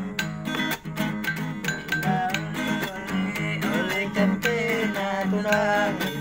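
Acoustic guitar strummed in a steady, repeating rhythm, with a man's voice coming in over it about halfway through.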